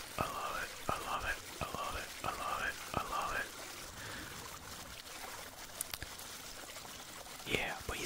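Water gurgling through a partly blocked culvert pipe under pressure, in a quick run of about six similar glugs over the first three and a half seconds, then a fainter wash of flow.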